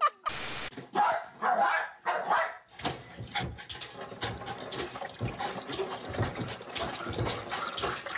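A kitchen tap runs steadily into a sink, water splashing, from about three seconds in. Before that come a few short, loud vocal sounds.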